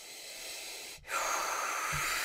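A woman's audible breathing: soft breath at first, then a longer, louder drawn-in breath, a gasp, starting about a second in.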